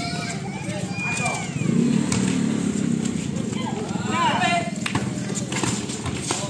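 Players and onlookers shouting during an outdoor pickup basketball game. Scattered thuds from the ball and footsteps on the concrete court run under the voices, with louder calls near the start and about four seconds in.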